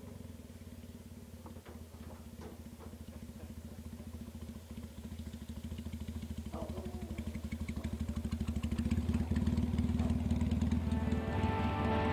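Vintage motorcycle engine running at low speed, its exhaust beats growing steadily louder as the bike rides toward the listener. Music comes in near the end.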